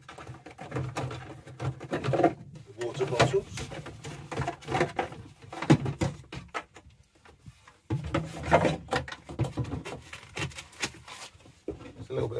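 Plastic water containers being lifted out of a campervan's kitchen pod and set down, with repeated knocks and bumps, mixed with brief stretches of a man's speech.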